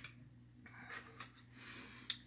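Near silence over a low steady hum, with a soft click at the start and a few faint rustles and breath-like hisses.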